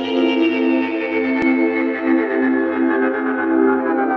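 Electronic ambient music: a sustained synthesizer chord pulsing gently, with higher tones slowly sliding downward in pitch. A single brief click sounds about a second and a half in.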